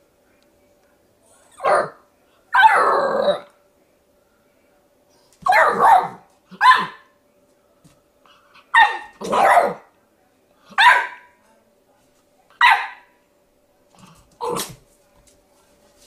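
A puppy barking at its own reflection in a mirror: about nine short barks a second or two apart, with one longer, drawn-out bark about three seconds in.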